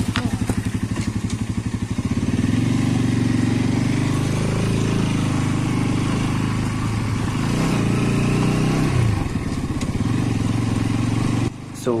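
Motorcycle engine ticking over with an even beat, then pulling away about two seconds in and running steadily under way, its pitch rising briefly near the end.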